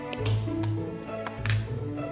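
Gentle background music, with a few sharp plastic clicks as the lid of a spread tub is pried off, the loudest about a second and a half in.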